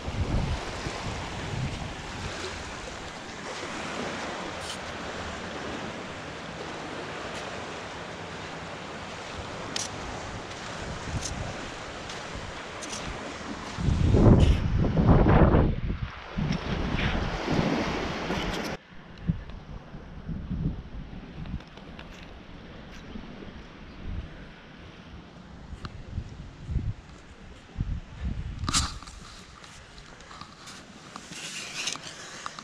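Small surf washing up on a sandy beach, with wind buffeting the microphone and a louder rush about halfway through. About two-thirds of the way in the sound drops abruptly to quieter wind with scattered soft thumps.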